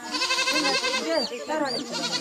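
A crowd of people calling and shouting over one another, with a high, wavering cry that fills the first second.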